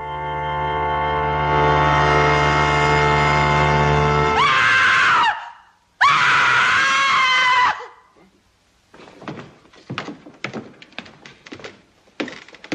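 A held orchestral chord swells in a dramatic music sting, then a woman screams twice, about four and six seconds in. Scattered knocks and thuds follow near the end.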